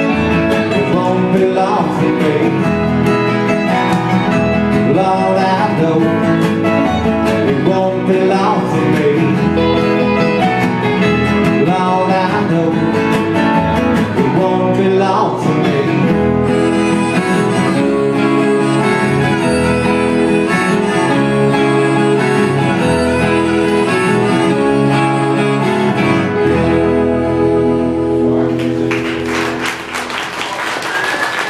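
Live Americana string band playing, with electric and acoustic guitars, mandolin and upright bass. The music winds down near the end and clapping starts.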